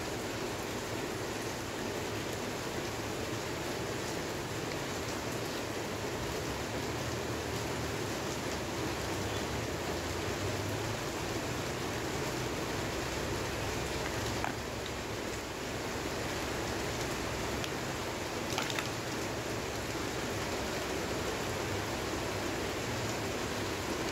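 Steady hiss of background noise, with a couple of faint clicks later on.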